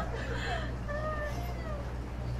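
A thin, high-pitched voice holding a few wavering notes in a mock-opera falsetto.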